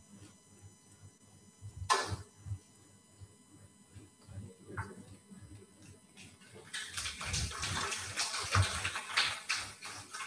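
Faint clapping from a small audience in a room, rising in about seven seconds in and going on to the end; a single short rustle or bump about two seconds in.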